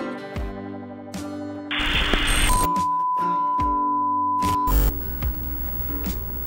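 Outro sound effect of a TV test card: music is cut about two seconds in by a short burst of static hiss, followed by a steady, high-pitched test-tone beep lasting about two seconds. The music then resumes with strummed guitar.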